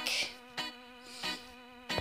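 A steady low buzz with many evenly spaced overtones, and a brief hiss near the start.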